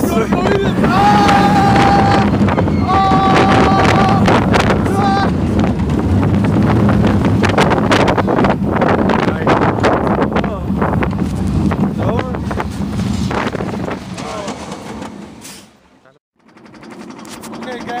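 Roller coaster ride heard from a seat on the moving train: wind rushing over the microphone and the train's rumble on the track, with riders screaming twice near the start, each scream held about a second. The sound cuts out briefly near the end.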